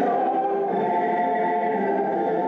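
A choir singing slow, sustained chords, several voices holding long notes together.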